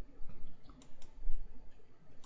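A few sharp computer mouse clicks, the loudest a little past halfway, over a faint low hum.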